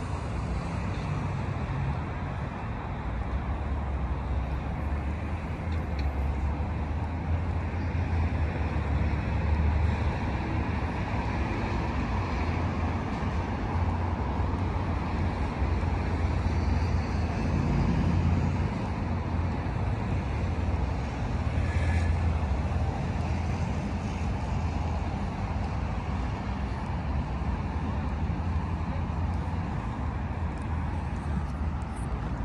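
Steady city road traffic: a continuous low rumble of passing cars that swells a little now and then as vehicles go by.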